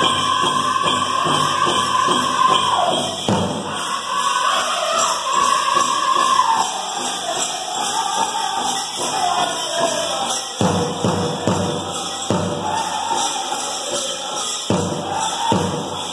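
Powwow drum group singing in high voices over a steady pounding big-drum beat, with the jingle of dancers' ankle bells.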